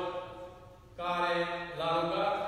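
A man's voice intoning Orthodox church chant in long held notes: one phrase fades out just before the halfway point, and a new phrase starts about a second in.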